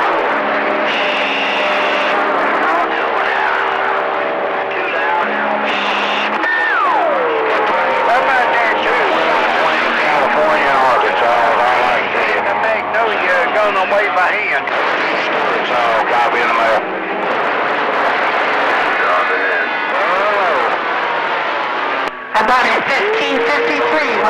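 CB radio receiver on channel 28 (27.285 MHz) picking up skip: several distant stations talking over each other in a garbled jumble, with steady heterodyne tones under the voices. A whistle falls in pitch about six seconds in, and near the end the signal drops out briefly before a steady tone comes in.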